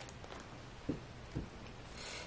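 Quiet handling noise with two soft thumps about half a second apart near the middle, from hockey cards and a foil pack being handled.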